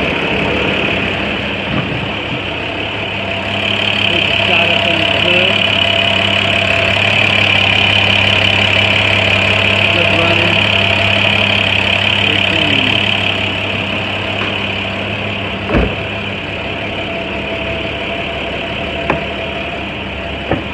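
International 4400's MaxxForce DT inline-six diesel idling steadily, with a high whine that grows louder for several seconds in the middle. A single sharp knock comes near the end, followed by a couple of lighter clicks.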